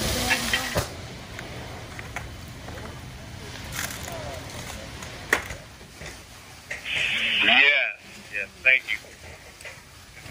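Indistinct voices over a steady low rumble from a structure fire, with a couple of sharp pops from the burning wood in the middle. A loud voice cuts in about seven seconds in.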